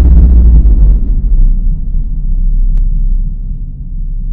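Deep rumble trailing off from a boom sound effect, fading slowly.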